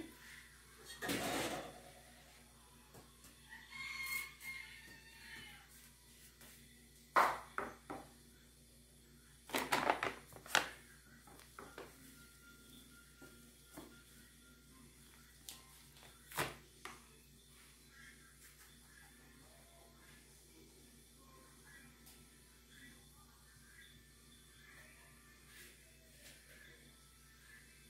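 Wheat flour being sifted by hand through a stainless-steel mesh sieve into a plastic bowl: scattered short knocks and rustles from the flour bag and the sieve being handled against the bowl, the loudest about seven and ten seconds in, with quiet stretches between.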